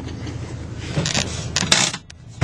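The 1998 Dodge Ram 2500's 8-litre V10 Magnum engine idles as a steady low hum, heard from inside the cab. There are short rustling clatters about a second in and again near the end, and then the engine sound drops away suddenly.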